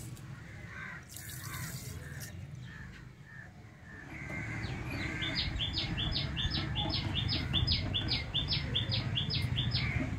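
A bird calling over and over, a fast run of short high chirps at about four a second from about five seconds in, over a low steady rumble that rises about four seconds in.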